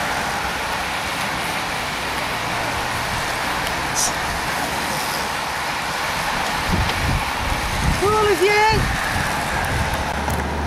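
A bunch of road racing bicycles passing close by: a steady hiss of tyres and rushing air. A brief shout comes about eight seconds in.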